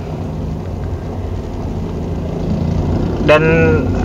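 Car cabin noise while driving slowly: a steady low engine-and-road hum that grows slightly louder. A voice starts speaking near the end.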